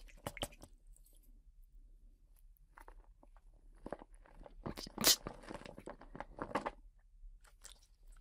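Quiet, scattered clicks and soft wet noises as somen noodles are handled and dipped in their soy-based sauce, with a louder run of clicks about five seconds in.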